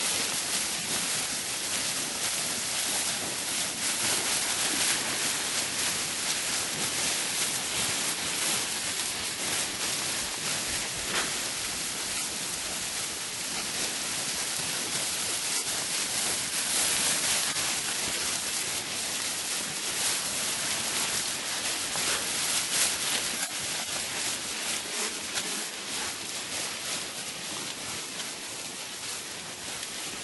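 Tall dry grass rustling continuously as a herd of cattle walks through it.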